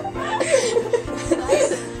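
Several people laughing and chuckling over background music.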